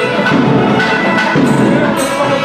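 South Indian temple procession music: drumming under a held melody line, playing steadily.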